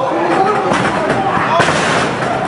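Wrestlers' bodies hitting the ring mat, with one sharp impact about three-quarters of the way through, over voices shouting throughout.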